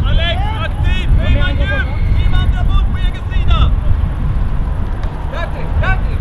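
Wind buffeting the microphone with an uneven low rumble throughout. Distant raised voices call out from the pitch during the first few seconds and once more near the end.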